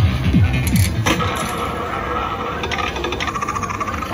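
Pinball video slot machine's electronic bonus-round sound effects as a ball shot is played. A sharp click about a second in is followed by a steady electronic tone with a spell of rapid ticking, over a busy musical background.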